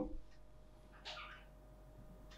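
A quiet pause in a man's speech: low room tone with a faint steady hum and one faint, short sound about a second in.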